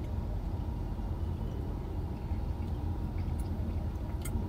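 Steady low rumble of a parked SUV's idling engine, heard inside the cabin, with a few faint light clicks.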